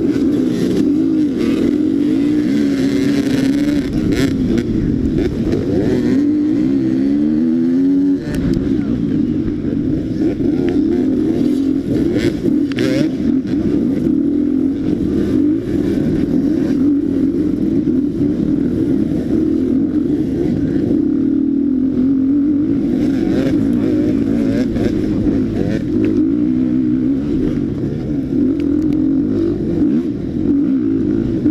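Dirt bike engine run hard in an off-road race, heard close up from the rider's own bike: it comes in suddenly, revs rise and fall as it shifts through the gears, with a sharp climbing rev a few seconds in.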